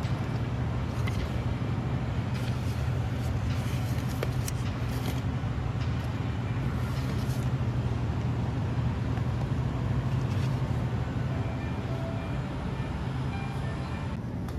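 Steady low hum of a grocery store's background machinery, with faint rustling of a paper coupon and a cardboard box being handled during the first half.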